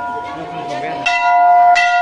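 Hanging temple bell struck repeatedly, each strike ringing on in a long, sustained metallic tone; it is struck again about a second in and once more shortly after, over crowd chatter.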